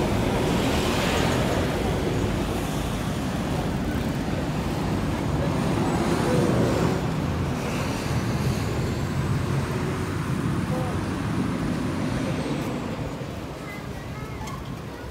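Road traffic at a busy junction: a steady wash of passing cars and vans, easing a little near the end.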